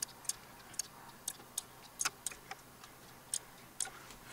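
Computer mouse clicking: about ten short, sharp clicks at irregular intervals as points of a spline curve are placed one after another in CAD software.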